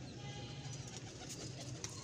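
Pigeons cooing faintly, over a low steady hum.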